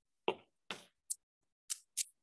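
Five short, sharp clicks, unevenly spaced over two seconds, the first the loudest and fullest, the rest thin and high.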